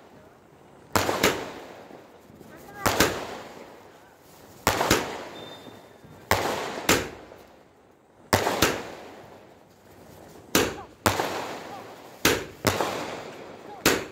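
Multi-shot aerial firework cake (a 'fireshot') firing: pairs of sharp bangs come about every two seconds, seven pairs in all, and each pair is followed by a hissing tail that fades away.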